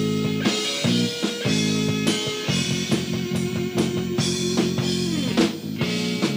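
Rock band playing an instrumental passage live: a Stratocaster-style electric guitar sustains chords and a long held note that bends about five seconds in, over a drum kit keeping a steady beat.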